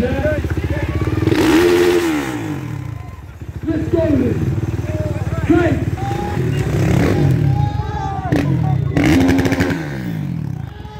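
Dirt bike engines running and being revved in repeated rising and falling bursts, with a bike moving off under throttle.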